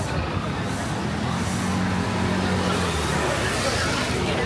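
A vehicle engine hums low and steady close by from about a second in, dying away near the three-second mark. Rain splashes on an umbrella over a street murmur throughout.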